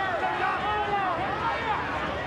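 A stadium crowd at a rugby league match, with many spectators' voices calling and shouting over one another at a steady level.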